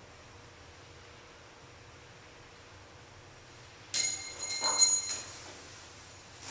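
A smooth, sharpened steel spike nail, dropped from six feet, strikes a hard floor about four seconds in with a sharp metallic clink and a brief ringing tone. It bounces and clatters again, louder, just under a second later.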